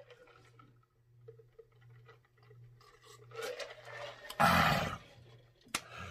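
Faint sounds of drinking from a plastic pitcher, then a loud, rough throat sound of about half a second, roughly four and a half seconds in, after the swallow.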